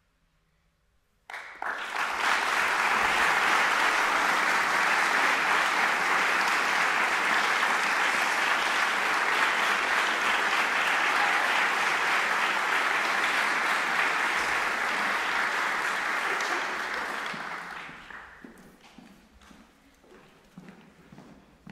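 Audience applause at the end of a choral piece: after about a second of near silence it breaks out suddenly, holds steady, and dies away near the end into a few scattered claps.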